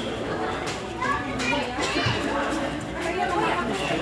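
Crowd of people talking over one another in indistinct, overlapping voices, some of them children's.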